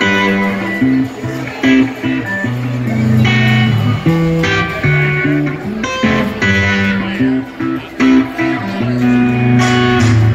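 Live rock duo playing an instrumental passage: an electric guitar riff of held, changing chords over a drum kit, with no vocals.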